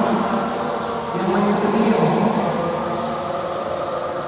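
A man's voice speaking in a reverberant hall, steady and continuous.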